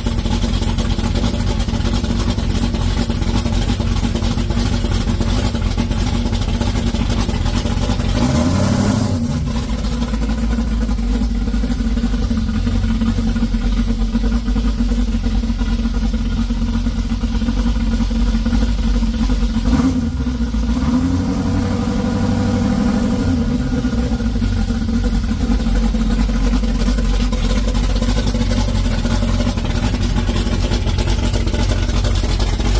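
1972 Chevy C10's 454 big-block V8, fitted with a COMP Cams Thumpr hydraulic roller cam, running steadily as the truck is driven away and back. The engine note changes about eight seconds in, then rises and falls a few times around twenty seconds in.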